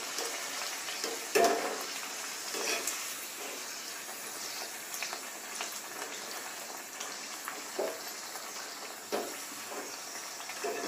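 Hot oil sizzling steadily as a pathir pheni deep-fries in a small iron kadai, with a few short clinks of a perforated steel ladle against the pan as it bastes the pastry.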